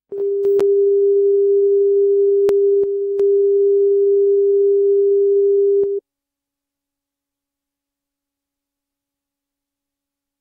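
Steady single-pitch line-up reference tone, the alignment tone at the head of a broadcast master tape. It dips slightly in level about three seconds in, carries a few faint clicks, and cuts off suddenly about six seconds in.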